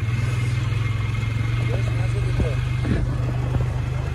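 Polaris Sportsman 500 ATV's single-cylinder four-stroke engine idling steadily, a constant low drone.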